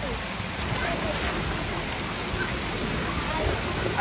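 Water rushing steadily down a water slide and splashing into the pool below, an even spray of noise.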